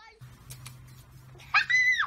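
A high-pitched squeal about a second and a half in, rising quickly and then held for half a second, over a steady low hum.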